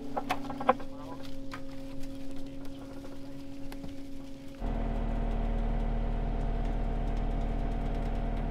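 A vehicle engine running steadily, with a few light clicks. About halfway through there is a sudden change to inside a vehicle cab, where an engine runs with a deeper, steadier hum.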